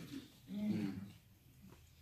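A brief, quiet voiced murmur, a short 'mm' from a person, about half a second in, during a pause in the preaching; then room tone.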